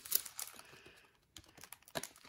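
Hockey trading cards being flipped and slid through by hand: a quick run of light clicks and rustles in the first second, then a few more clicks near the end.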